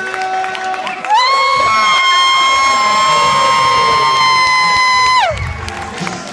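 A handheld canned air horn blown in one long, loud, steady blast of about four seconds, starting about a second in; its pitch sags as it cuts off. A crowd is cheering around it.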